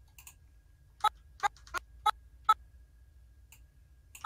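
Clicking on a computer while working in animation software: five sharp clicks spaced a third to half a second apart, starting about a second in, with a few fainter clicks around them over a low steady hum.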